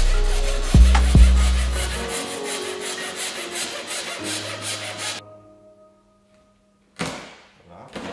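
Repeated scraping, sawing strokes of a cut-out wire being drawn through the adhesive holding a car's side window glass, heard under background music that stops about five seconds in. Near the end come two louder rasping scrapes as the cutting goes on.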